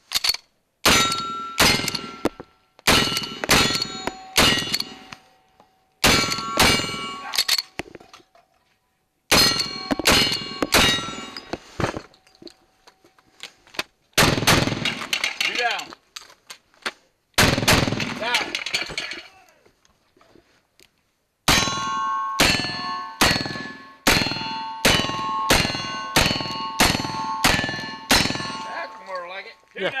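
Black-powder gunfire on a cowboy action stage: a string of revolver shots, each followed by the ring of a struck steel target, two heavier blasts around the middle, then a fast run of about ten shots with steel ringing after each.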